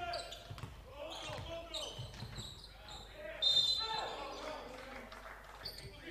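Basketball being dribbled on a hardwood court in a large, echoing sports hall, with players' voices calling out and a brief high squeak about three and a half seconds in.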